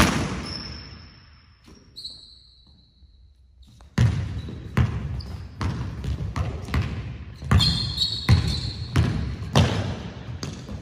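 Basketball bouncing on a hardwood gym floor, echoing in the hall. A single bounce at the start is followed by a lull with sneaker squeaks. Steady dribbling starts about four seconds in at roughly two bounces a second, with more sneaker squeaks near the end.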